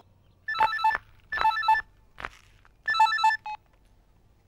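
Electronic telephone ringing: three short trilling rings, each about half a second long.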